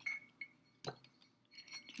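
A few light clicks and taps as a white electrical cord is wrapped around a grey plastic Scentsy warmer stand and knocks against it, the loudest about a second in.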